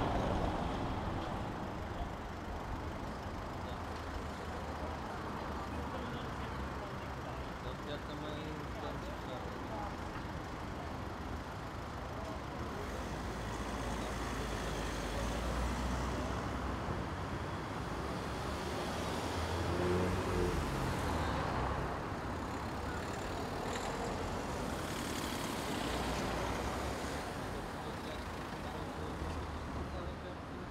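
Street ambience: road traffic running past, with people's voices in the background and one louder swell about two-thirds of the way in.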